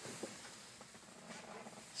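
Quiet room tone with a faint hiss and a couple of faint clicks, one just after the start and one past the middle.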